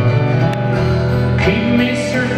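Steel-string acoustic guitar strummed live in an arena, recorded from the audience.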